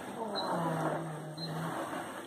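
A person's voice: a quiet, low hum held on one note for a little over a second.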